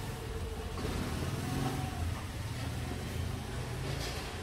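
A low, steady background rumble with no clear events in it.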